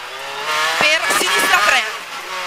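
Rally car engine heard from inside the cabin, revving hard under full acceleration. There is a short break in the note about a second in as it shifts up from first to second gear, then it pulls hard again.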